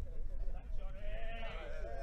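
Men's voices shouting and calling out on an outdoor training pitch, including one long, wavering shout held for over a second.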